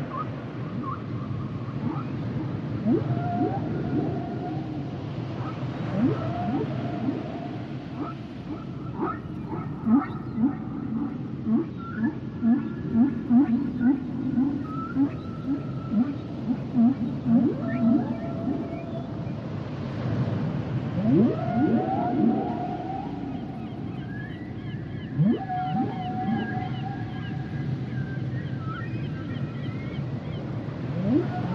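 Humpback whale song: a steady sequence of low moans and grunts, rising whoops and held higher tones. A quick run of short repeated low calls fills the middle.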